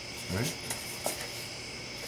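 A plastic floor panel being lifted out of an RC car body shell: two faint light clicks a little under and just over a second in, over a steady electrical hum.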